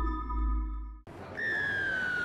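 The end of a logo sting's music, ringing tones over a low drone, fades and cuts off suddenly about a second in. Open-air ground noise follows, then one long whistle blast that slides steadily down in pitch: a referee's whistle starting the rugby league kickoff.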